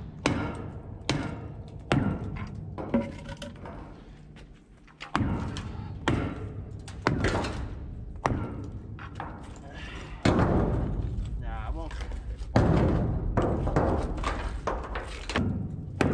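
Hammer blows on a precast hollow-core concrete plank, about one strike a second, chipping and breaking the concrete away. The strikes pause briefly around a quarter of the way in, then resume.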